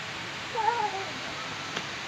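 A young child's short wordless vocal call, about half a second long, rising and then falling in pitch, over a steady background hiss, with a faint click near the end.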